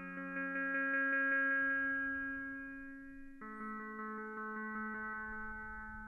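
Guitar notes from the PlantWave app's "Guitar 2" instrument, played by the plant's electrical signal picked up through a leaf electrode. One long note rings out, then a second, slightly lower note takes over about three and a half seconds in.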